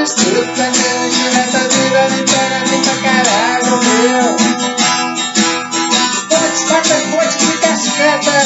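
Acoustic guitar strummed in a steady rhythm, with a man singing over it.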